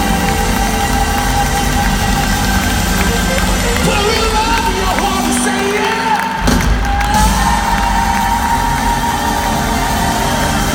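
Live band music over an arena sound system, heard from within the crowd, with the crowd cheering. The deep bass drops out about five and a half seconds in and comes back in about a second later.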